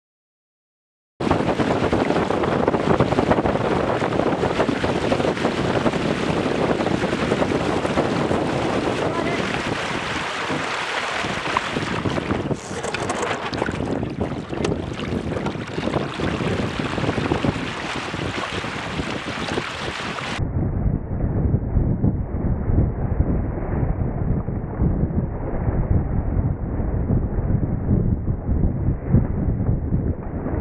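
Wind buffeting the microphone and water rushing past the hulls of a Weta trimaran sailing at speed. The sound starts abruptly about a second in. About twenty seconds in it cuts suddenly to a duller, more bass-heavy rumble of wind and water.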